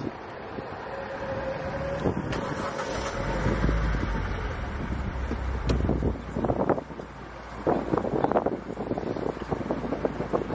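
Car cabin noise while riding: steady engine and road rumble with some wind noise, the low rumble growing heavier from about three seconds in.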